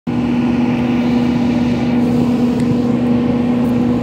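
A steady machine hum holding one constant low tone over a rushing noise, unchanging throughout.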